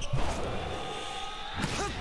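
Soundtrack of an animated volleyball match: a sharp hit of the ball right at the start, then a held note over a steady hiss, and a brief vocal cry near the end.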